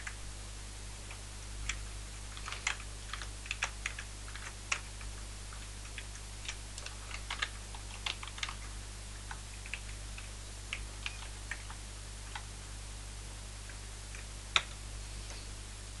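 Typing on a computer keyboard: irregular runs of keystrokes that thin out in the last few seconds, with one sharper click near the end. A steady low hum runs underneath.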